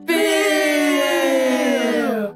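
Comedic sound-effect cue: one long, buzzy tone with many overtones that slides slowly down in pitch for about two seconds.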